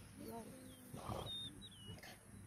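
Hippopotamuses grunting, the loudest a rough grunt about a second in. A bird's short whistled chirps come near the end.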